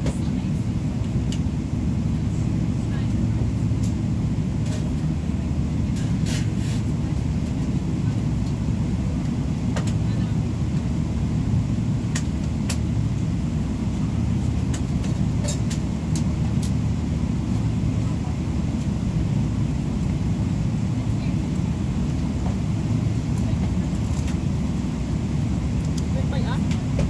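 Steady low rumble inside a jet airliner's cabin as the aircraft taxis slowly, with a few faint clicks scattered through it.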